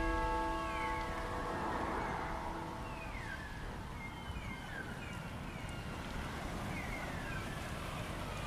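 Held music notes die away about a second in, leaving the steady low rumble of wind and road noise from a road bike in motion. Short falling chirps, as of a bird, repeat at irregular intervals over it.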